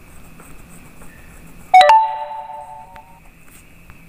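A single chime rings out suddenly a little under two seconds in, a few steady tones sounding together and dying away over about a second and a half.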